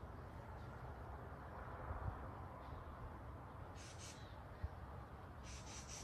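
Faint outdoor background: a steady low rumble, like wind on the microphone, with two brief hissy sounds about four seconds in and near the end.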